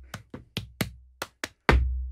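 Body percussion: a quick run of sharp slaps and snaps with deep chest thumps under some of them, ending in one heavy, low hit about 1.7 s in that rings on and fades.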